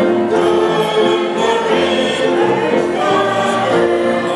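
Small ensemble of violins bowing slow, sustained notes in harmony, with piano accompaniment.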